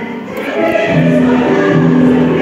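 Mixed church choir singing with a chamber orchestra, slow sustained chords: a held chord falls away just after the start and a new one swells in about a second in.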